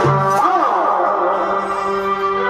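Folk music accompanying a Purulia chhau dance: a wavering, gliding melody over a steady held drone note.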